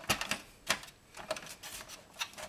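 Light plastic clicks and taps of a distribution board's plastic front cover being fitted over a row of DIN-rail circuit breakers, a handful of separate knocks, the firmest a little under a second in.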